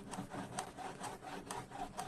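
A baby's teeth scraping and gnawing along the top edge of a plastic playpen panel, a quick run of short scraping strokes, about two or three a second.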